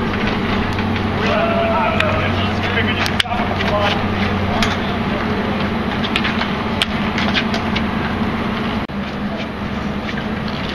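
Street hockey on a concrete court: sharp, irregular clacks of hockey sticks striking the ball and the ground, with faint shouting voices early on, over a steady low hum.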